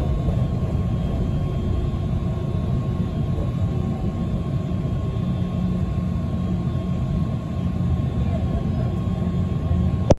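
Interior of a city bus on the move: a steady low engine and road rumble with a thin, steady whine above it.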